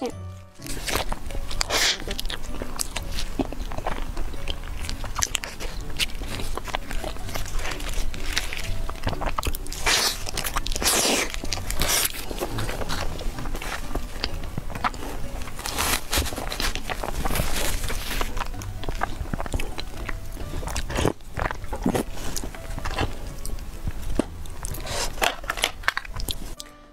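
Close-miked biting and chewing of a cream-filled snow-skin mochi (xuemeiniang): irregular soft crunches and wet mouth sounds, over background music.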